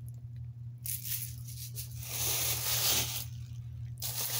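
A plastic shopping bag rustling and crinkling as it is handled, from about a second in until a little after three seconds, loudest near the end.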